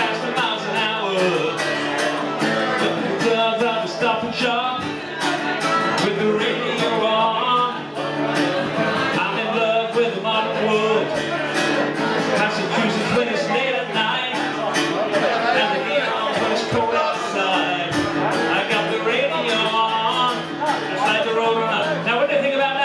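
Live rock music: electric guitar played with a man singing into the microphone, over a steady beat.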